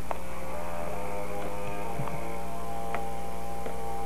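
Steady low electrical hum with held musical tones over it that change now and then, and a few faint clicks.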